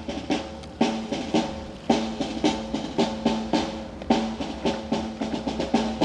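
Marching drums, snare and bass drum, beating a steady march cadence of about three strokes a second.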